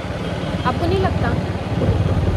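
Low wind and road noise on a phone microphone riding on a moving two-wheeler, with the engine running under it.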